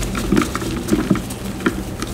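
Blocks of dyed gym chalk crunching and crumbling between gloved fingers: a soft powdery crackle broken by about four sharp crunches.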